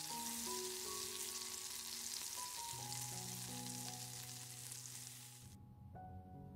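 Matchstick-cut potatoes frying in oil in a non-stick pan, a steady sizzle. The sizzle cuts off suddenly near the end.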